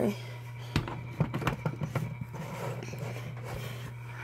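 Handling noise from picking up and moving an animated figure: a knock about a second in, then a run of light clicks and rustles. A steady low hum runs underneath.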